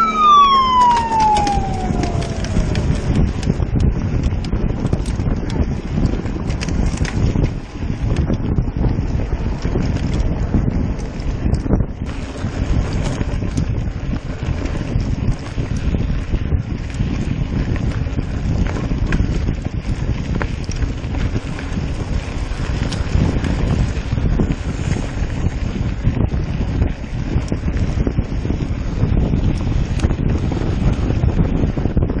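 A siren wails down and fades in the first few seconds, the race's start signal. Then mountain bikes ride a dirt fire road: a steady rumble of wind on the handlebar camera's microphone and tyres rolling over gravel.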